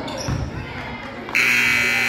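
Basketball scoreboard buzzer sounding a loud, steady buzz that starts about a second and a half in, as the game clock runs out at the end of the period. Spectators' voices before it.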